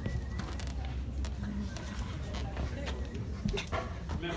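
Indistinct background chatter of people in a large room, with a low steady hum and scattered small knocks.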